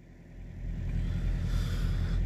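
Truck engine idling, a steady low hum heard from inside the cab, swelling up over the first half second and then holding steady.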